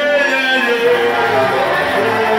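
Live worship band music, with instruments playing steady held chords.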